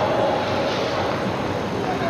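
Steady noisy din of an ice rink, with faint indistinct voices in it.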